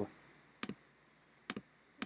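Two computer mouse clicks about a second apart, made while selecting from a dropdown menu, with quiet between them.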